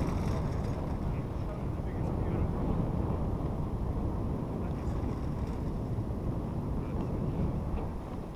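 Wind buffeting the microphone on a moving chairlift chair, a steady low rumble with no distinct mechanical beat.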